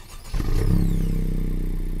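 The 2017 Honda Civic Si's turbocharged, direct-injected 1.5-litre four-cylinder engine starting. It catches about a third of a second in, flares up briefly, then eases back toward a steady idle.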